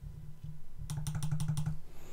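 Digital pen tapping and scraping on a drawing tablet as a fraction is handwritten: a quick cluster of light clicks about half a second to a second and a quarter in, over a low steady hum.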